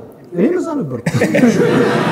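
Men chuckling and laughing mixed with talk; from about a second in, several voices laugh and talk over each other.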